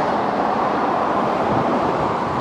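Steady, continuous roar of traffic on a busy road.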